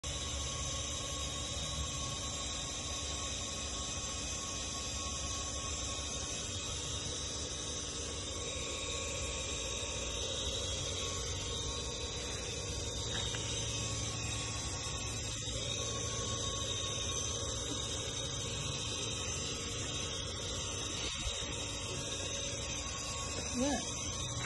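A steady hum with a hiss under it, unchanging throughout, from machinery running nearby.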